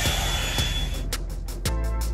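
Drybar Double Shot blow-dryer brush running with a high steady whine over its air rush, cutting off about a second in. Background music with a steady beat follows.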